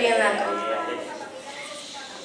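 A person's voice holding a long drawn-out sound that fades away after about a second, followed by quieter room sound.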